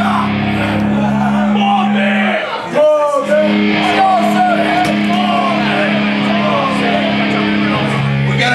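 Amplified electric guitars holding a steady, droning chord that drops out for about a second near three seconds in and then comes back, with voices shouting over it.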